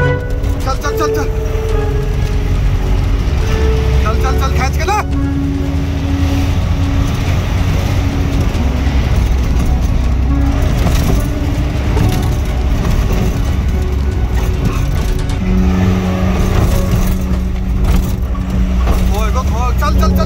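Engine and road rumble heard from inside a car being driven hard, with several long steady tones and raised voices over it.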